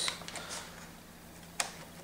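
A ThinkPad T61's plastic Ultrabay eject latch being pushed: faint handling sounds, then a single sharp click as the latch releases, about one and a half seconds in.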